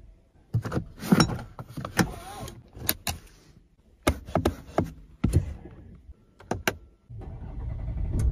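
A string of sharp clicks and knocks from a Cadillac CT5's cabin controls, the steering-wheel paddle shifter and then the brake pedal being pressed. About seven seconds in, a steady low rumble starts as the car's 2.0-litre turbocharged four-cylinder is started.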